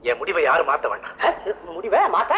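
Speech only: voices talking in film dialogue.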